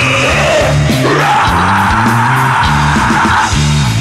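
Live rap-rock band playing: drums, bass and electric guitar under a shouted vocal, with one long held high note from about a second in until past the middle.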